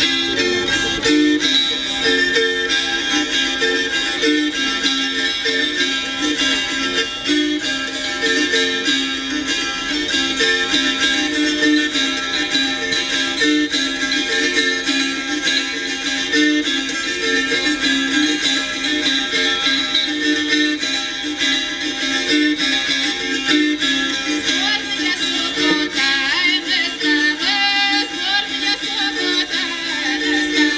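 Pskov gusli, a wing-shaped Russian psaltery, strummed in a steady repeating rhythm with many strings ringing together: a traditional Russian wedding tune played on the diatonic instrument retuned for the song.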